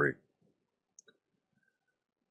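Near silence after a man's voice trails off, with two faint clicks about a second in.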